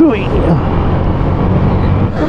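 Honda Click 125i scooter's small single-cylinder engine running steadily while riding, under heavy wind noise on the camera microphone. A short vocal sound at the start.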